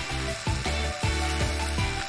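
Background music with a steady beat, about two beats a second.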